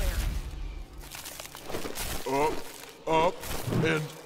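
A low rumbling noise that dies away about a second in, then a voice giving three short, strained wordless cries.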